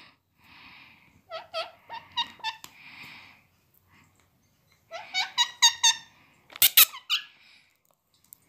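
Indian ringneck parakeet making short, high squeaky chirps in two quick runs, about a second in and again about five seconds in, with soft breathy hisses between them. Two sharp clicks come near the end.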